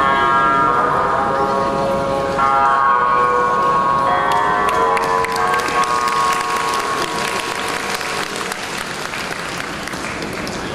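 Guqin music with long, bell-like ringing notes that die away in the second half, as audience applause starts about midway and carries on clapping to the end.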